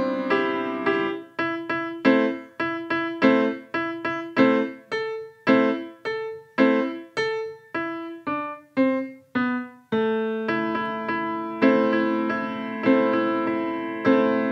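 Grand piano played solo: a simple melody in separate notes, each dying away before the next. From about ten seconds in, the notes overlap and ring on together more evenly.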